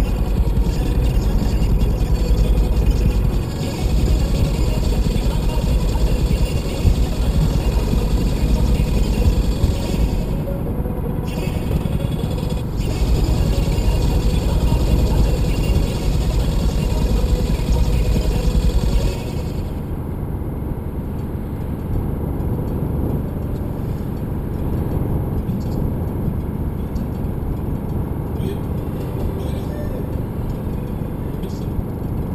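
Car driving at dual-carriageway speed, heard from inside: steady tyre-and-road rumble with engine drone. About two-thirds of the way through, the hiss drops away and the deep rumble eases.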